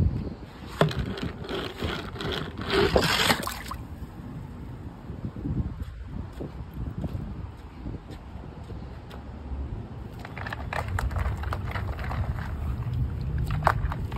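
Water sloshing in a shallow inflatable pool and a small die-cast toy car being handled, with scrapes and clicks, busiest in the first few seconds and again near the end.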